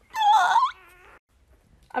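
A dog giving one high-pitched, wavering whine of about half a second that rises at the end, followed by a brief fainter, lower whine.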